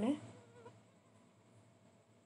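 Jaggery syrup boiling in a kadai on low flame as it is cooked toward the right stage for binding puffed rice, a faint steady noise. A voice trails off at the very start.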